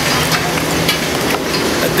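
Steady background noise with a low, even hum, like machinery running, with a few faint clicks.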